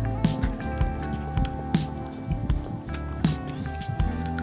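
Wet, squishy eating sounds of ripe mango flesh being bitten and chewed, with several sharp mouth smacks, over steady background music.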